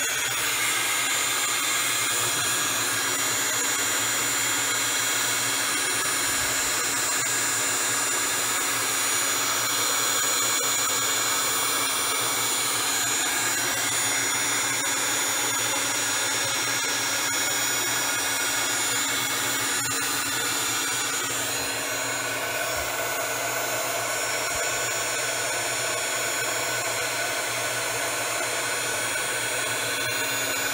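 Handheld embossing heat tool blowing steadily, a fan's rush with a high whine, as it melts silver embossing powder on a card. The sound drops a little about two-thirds of the way through.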